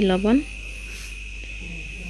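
A steady, high-pitched insect trill, typical of crickets, runs throughout, with a low hum beneath. A voice talking stops about half a second in.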